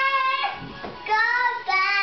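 A small child singing in a high voice without clear words: a short held note, then a longer held note starting about a second in.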